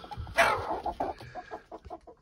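Young chickens clucking, with a louder call that falls in pitch about half a second in, then a run of short clucks.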